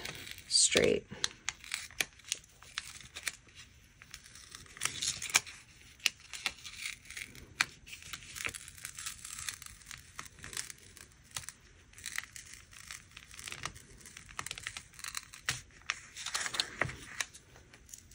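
A paper planner sticker being slowly peeled back off a page, with soft, intermittent crinkling and small tearing sounds as the paper rips while it lifts.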